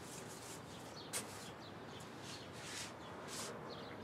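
Faint background ambience: soft rustling with faint bird chirps and one small click about a second in.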